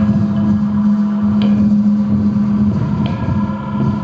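Live experimental rock band holding a loud, steady low drone, with two sharp struck accents, about a second and a half in and again about three seconds in, the second leaving a ringing tone.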